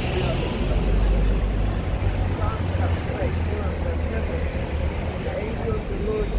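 Low rumble of heavy street traffic, loudest in the first couple of seconds, as a double-decker bus pulls past close by.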